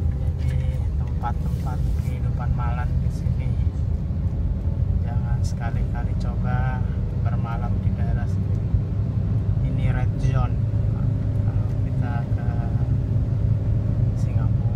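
Steady low rumble of a car's engine and tyres heard from inside the cabin while driving in slow city traffic, with short faint snatches of a voice on and off.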